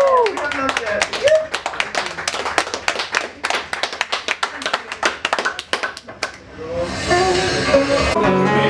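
Small audience applauding as a song ends, the last held sung note cutting off just as the clapping starts. The clapping is dense for about five seconds, then thins out and dies away near the end, where a few voices are heard.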